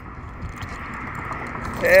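Low, steady outdoor noise with faint light clicks and rattles from the hardware of a semi-trailer's rear swing door as it is swung open.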